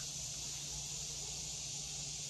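Steady, even high-pitched chorus of insects such as crickets or cicadas, with no other distinct sound standing out.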